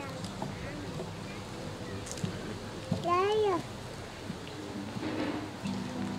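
Acoustic guitar group about to start a tune: faint string sounds, then about three seconds in a short voice-like call that rises and falls in pitch, the loudest sound here. The guitars come in together near the end.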